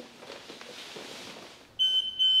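Faint rustling, then near the end the CENTRELLA Smart+ hospital bed's bed exit alarm starts: a loud, high, steady beeping tone pulsing about three times a second. It signals that the patient is moving towards the edge of the bed.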